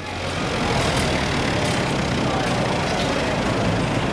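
A forklift engine running steadily amid a wide, even wash of machinery noise, cutting in abruptly.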